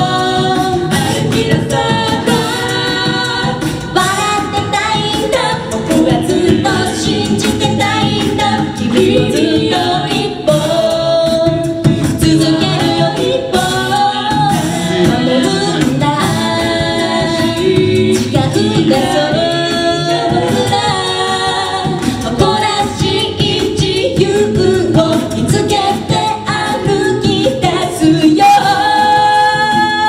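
A cappella group of six mixed male and female voices singing in harmony into microphones, with a sung bass line underneath.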